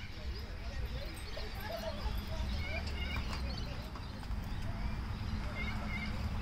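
Outdoor ambience at a sports field: an uneven low rumble of wind on the microphone, with faint distant voices and a few short bird chirps.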